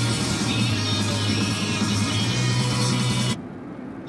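Music from an FM station playing through a car radio's speakers during an auto-scan of the dial, cutting off suddenly a little over three seconds in as the scan leaves the station.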